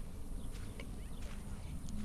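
Outdoor beach ambience: a steady low rumble with a few faint, short high chirps scattered through it.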